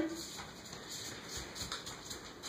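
A toddler's bare feet stepping on paint-covered paper laid over a wooden floor: a few faint, soft pats as she walks through wet paint.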